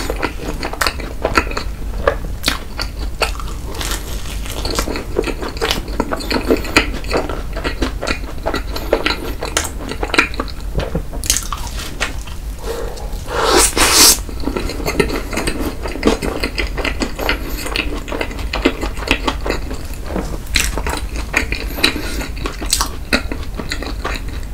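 Close-miked eating sounds: chewing, smacking and small wet mouth clicks of a crisp waffle filled with blueberry cream, with one louder crunchy bite about halfway through.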